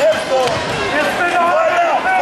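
Several spectators and coaches shouting at once, loud overlapping calls to the wrestlers.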